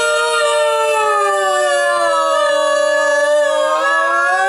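A sustained electronic keyboard tone rich in overtones. Its pitch slowly bends down over about three seconds, then rises again near the end, giving a wobbly effect.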